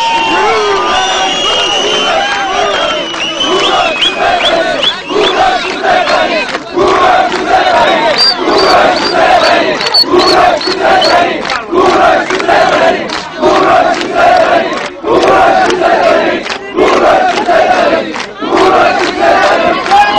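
Large crowd chanting a Persian slogan hailing Cyrus the Great in unison. After a few seconds of looser shouting, the chant settles into a steady rhythm, the phrase repeating about every second and a half to two seconds.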